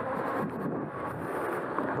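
Wind on the microphone over the steady rolling noise of a Super73 S2 electric bike riding along wet, packed sand.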